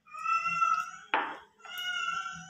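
A cat meowing twice, each a long drawn-out call of about a second. Between the two meows, about a second in, there is a short scrape.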